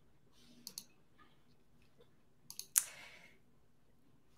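A few faint clicks over quiet room tone, the sharpest just under three seconds in, followed by a short hiss.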